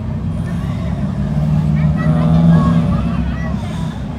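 Steady low rumble of a cruise boat's engine under way, with people's voices in the background.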